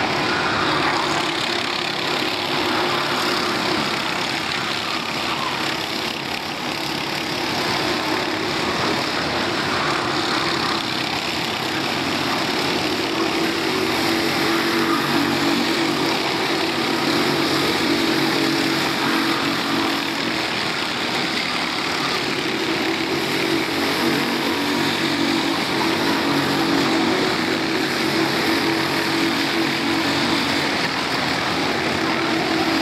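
Four-stroke racing kart engines running on track, one and then several together, their pitch rising and falling as the karts accelerate and brake.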